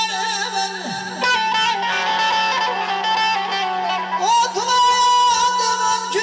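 Amplified male voice singing Azerbaijani mugham: long held notes that bend and slide in ornaments, over a steady low drone.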